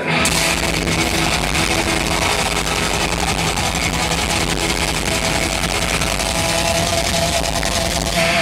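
Thrash metal band playing live through a large PA: distorted electric guitars, bass and drums, loud and dense without a break.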